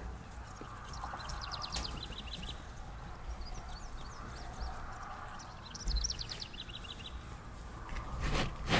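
A small bird sings a quick trill of rapid, falling notes twice, about a second in and again near six seconds. Under it is faint rustling of plant foliage and stems being handled.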